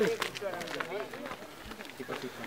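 Footsteps of people climbing a dirt path and rough stone steps, an irregular scuffing and crunching, with low voices talking in the background that fade out about halfway through.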